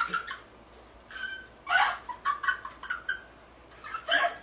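A woman's high-pitched squealing laughter in short bursts: two longer squeals about a second in, then a quick run of giggles, a few a second.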